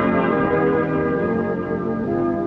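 1951 Jugoton 78 rpm shellac recording of a dance orchestra holding sustained, bell-like chords, with the dull, band-limited sound of an old disc.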